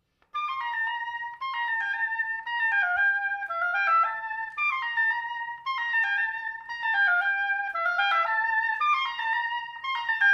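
Solo oboe playing a flowing melodic line of short, connected notes high in its range, starting about a third of a second in after a moment of silence.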